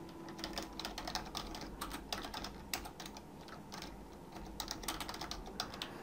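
Faint typing on a computer keyboard: a run of quick keystrokes, a short pause about halfway, then a few more keys.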